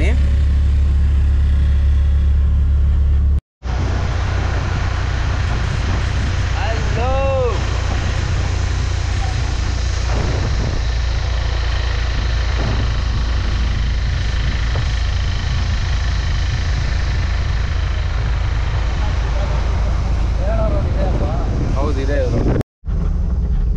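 Riding in a goods truck: steady low engine drone with road noise. After an abrupt cut about three and a half seconds in, a louder rush of wind and road noise takes over, with the engine drone still underneath.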